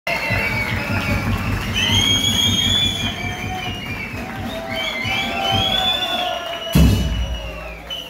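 Murga percussion playing a fast, driving beat on low drums, with voices singing and calling over it. About seven seconds in, one loud hit closes the passage.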